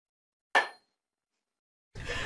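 One sharp clack of a hand-held wooden board struck like a clapperboard, with a brief ringing tail.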